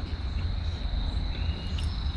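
Insects trilling on one steady high note, over a constant low rumble.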